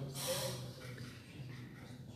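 A man's short, sharp breath out through the nose, like a brief laugh, right at the start. Then quiet room tone with a faint steady low hum.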